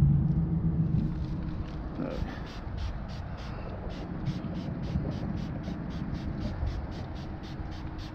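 Trigger spray bottle pumped quickly, misting spray wax in short hissing sprays at about three or four a second, starting about two seconds in.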